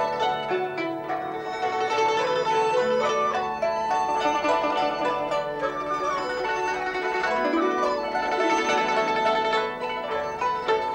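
Instrumental background music: a continuous melody on plucked string instruments in a traditional style.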